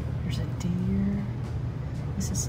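A steady low hum, with a short murmured voice held on one note a little after half a second in.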